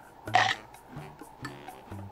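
Soft background music with a steady bass line. About half a second in there is a short crunch as a cream-filled chocolate sandwich biscuit is bitten.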